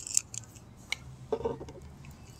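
Handling sounds of a small retractable tape measure and a PVC pipe: a few light clicks, a sharper one about a second in, then a brief rattle.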